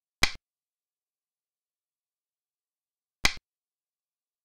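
Two sharp clicks of the move sound effect in a Chinese chess replay, each marking a piece being set down on the board, about three seconds apart.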